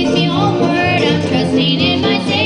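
Live bluegrass band playing, with banjo, fiddle, acoustic guitar, upright bass and keyboard, while a woman sings a held, wavering melody line.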